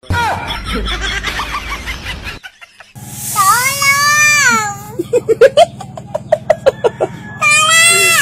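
A long, high wailing cry that rises and then falls, followed by quick, rhythmic laughter at about four beats a second and a second falling cry near the end. All of it sits over a steady low backing-music drone; the first couple of seconds are a noisy jumble of sounds.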